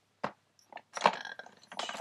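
Small hard clicks and knocks of makeup items being handled: one sharp click about a quarter second in, then a short cluster of clicks about a second in, followed by a breath near the end.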